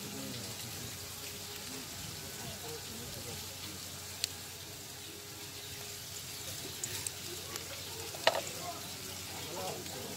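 Wet, hissing water sounds of live stinging catfish fry squirming in a steel bowl as a mesh hand net drains over them. There is a sharp click about four seconds in and a louder one about eight seconds in.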